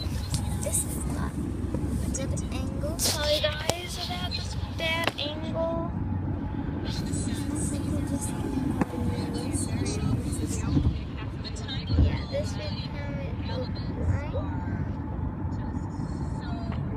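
Steady road and engine rumble heard from inside a moving car's cabin, with indistinct voices talking at times.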